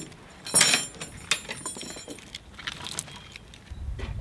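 Steel log chain clinking and rattling in several sharp metallic jangles, the loudest about half a second in. A low rumble comes in near the end.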